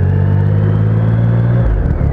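2012 Triumph Rocket III's 2.3-litre inline-three engine running under way, its low note rising slightly in pitch, then breaking off and dropping about one and a half seconds in.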